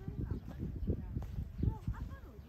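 Faint voices of people talking at a distance, over low, irregular thumps of footsteps.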